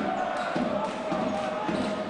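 A basketball being dribbled on the court, bouncing about twice a second, over steady arena crowd noise.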